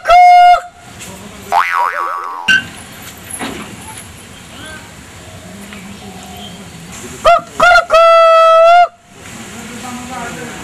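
A man imitating a rooster's crow through cupped hands: a long, steady, high call right at the start, then two short calls and another long held call about seven to nine seconds in. A springy comic 'boing' sound effect comes about two seconds in.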